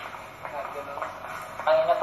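A quiet stretch of background noise from the played-back recording, then a man's voice starting near the end.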